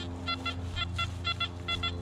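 Nokta Anfibio metal detector sounding short, high beeps in quick irregular groups as the coil is swept over the ground, over a steady low hum.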